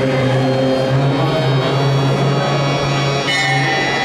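Indian devotional music on harmonium: a steady low drone note held throughout under sustained reedy melody notes, with a brighter chord coming in about three seconds in.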